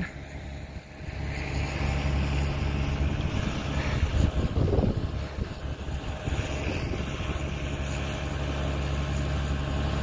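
An engine idling steadily, with a low even hum, mixed with wind; a short louder wavering sound comes about halfway through.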